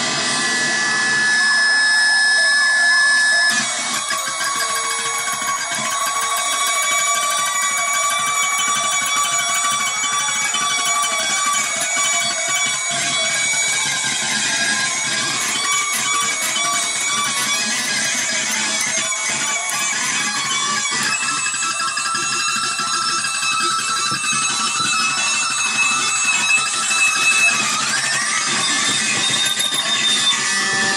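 Jazzmaster-style electric guitar being strummed and picked, a dense wash of sustained, ringing notes with a noisy edge, steady throughout and a little louder in the first few seconds.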